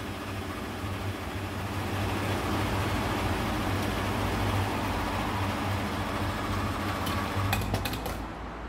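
Petrol pump dispensing fuel into a car's tank: a steady motor hum with the rush of fuel through the nozzle. Near the end come a few quick clicks as the nozzle is taken out and handled.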